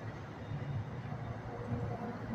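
Low, steady rumble of distant road traffic.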